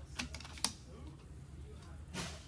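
A quick run of light mechanical clicks, one sharper than the rest about two-thirds of a second in, from hands working an FX Impact air rifle's action and fitting a trigger-pull gauge to its trigger just before a shot.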